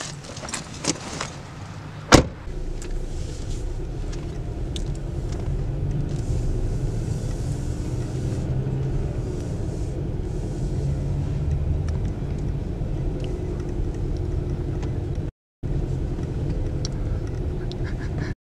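Small clicks and a jangle of keys, then a car door shuts with a sharp knock about two seconds in. After it comes the steady low hum of a car engine running, heard from inside the cabin, growing a little louder after a few seconds. The sound cuts out briefly near the end.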